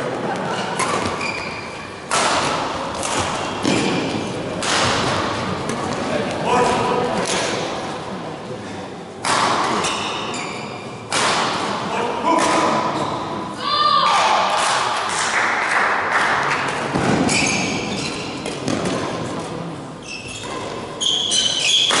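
Badminton play in a large echoing sports hall: a series of sharp racket hits on the shuttlecock and thuds on the court, with players' voices between them.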